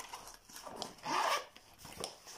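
Cloth and zipper rustling as a grey fabric messenger bag is handled and turned over, with a louder burst of rustling about a second in.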